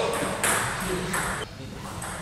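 Table tennis balls clicking and pinging as they bounce off tables and bats, a few separate clicks with short gaps between them, under a brief voice at the start.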